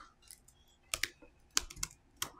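A few short, sharp clicks: two about a second in, then three in quick succession near the end.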